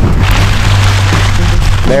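Wind buffeting the camera microphone: a loud low rumble with a rushing hiss that rises about a quarter second in and holds.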